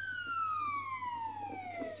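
Emergency vehicle siren in a slow wail, one long tone sliding steadily down in pitch.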